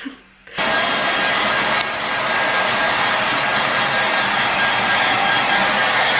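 Hair dryer blowing steadily with a faint high whine, cutting in abruptly about half a second in; it is drying a wet dog's coat.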